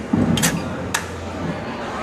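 A knock and two sharp plastic clicks, about half a second and a second in, from a FuelRod portable charger being handled at the slot of a FuelRod charger-swap kiosk, over a low steady background din.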